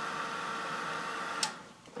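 Handheld craft heat tool blowing with a steady whir, then cutting off with a click about one and a half seconds in and winding down to quiet.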